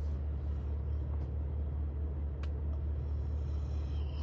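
Steady low rumble of a vehicle heard from inside its cabin, with one faint click about two and a half seconds in.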